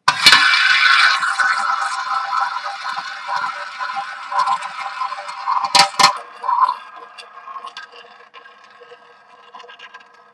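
Tabletop roulette wheel spun by hand, its ball sent around the bowl: a loud rolling rattle that starts suddenly and fades over several seconds, two sharp clacks near six seconds in, then a faint clatter as the wheel spins down.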